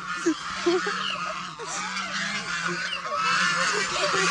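A flock of white domestic geese honking, many overlapping calls, as the birds hurry toward a plate of food held out to them.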